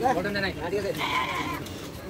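People talking, then a short, steady, high-pitched call about a second in.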